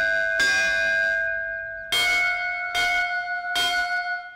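A large temple bell struck four times, roughly a second apart, each stroke ringing on into the next.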